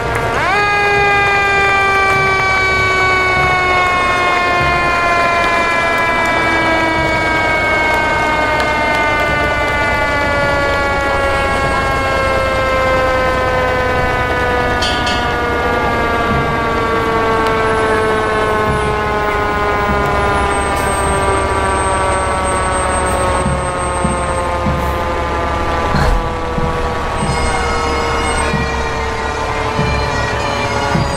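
Fire truck's mechanical siren winding up sharply, then coasting down in one long, slowly falling wail over the low rumble of the truck. A single brief knock comes near the end.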